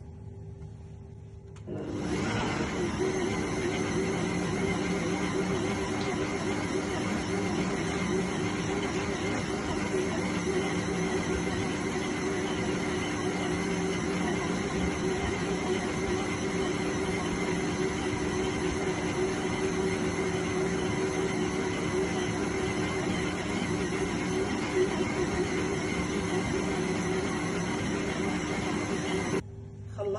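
Electric stand mixer motor running steadily at constant speed while its dough hook kneads a soft yeast dough. It switches on about two seconds in and stops just before the end.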